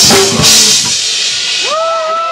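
Live hardcore punk band ending a song: last drum hits with two cymbal crashes, the second about half a second in, then the cymbals ring out and the music stops. A voice begins near the end.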